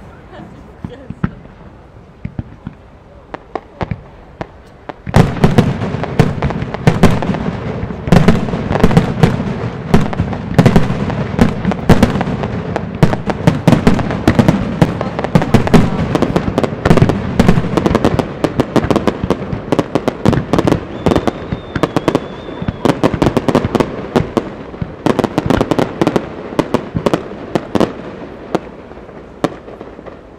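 Japanese aerial firework shells going off: a few scattered bangs at first, then, about five seconds in, a sudden dense barrage of rapid bursts that runs for more than twenty seconds and thins out near the end.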